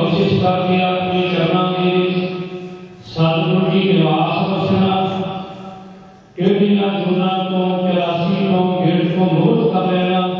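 A man's voice chanting a Sikh prayer into a microphone, amplified through the hall's sound system. It comes in long phrases of about three seconds, held on a nearly steady pitch. Each phrase starts strongly and trails off before the next begins.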